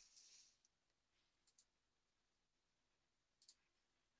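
Near silence, with two faint double clicks of a computer mouse, about a second and a half in and again near the end.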